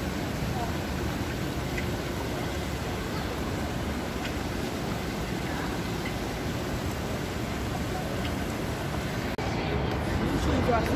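Steady rush of water from a pond's waterfall and spray, with faint distant voices behind it. The sound breaks off abruptly near the end.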